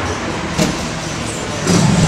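Steady rush of street traffic, with a short click about half a second in.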